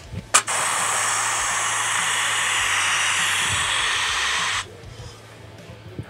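Compressed air hissing steadily from the pneumatic controls of a Rotary 247D tire changer as an air-operated arm is moved. A click about a third of a second in starts the hiss, which cuts off abruptly after about four seconds.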